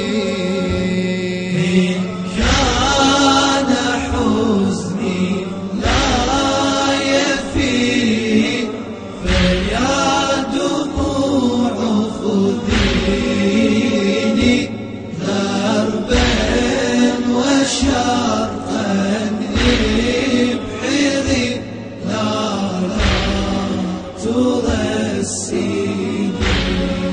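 Chanted Arabic lament (latmiya) music: layered male voices sing a slow, wavering melody over a deep beat that falls about every three seconds.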